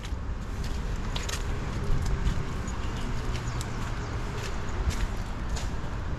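Street ambience: a steady low rumble of distant traffic with scattered short clicks of footsteps on stone paving.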